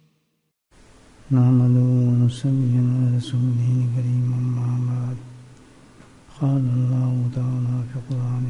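A man's voice chanting unaccompanied in long held notes, starting about a second in, with a pause for breath near the middle.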